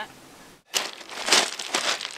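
Footsteps crunching and shifting on loose, broken rock scree, starting suddenly about half a second in, with quick irregular crunches of stones underfoot.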